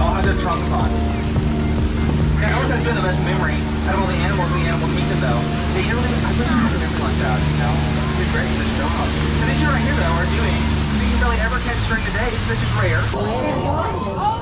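Tour boat's engine running with a steady low drone under voices, dropping away about eleven seconds in.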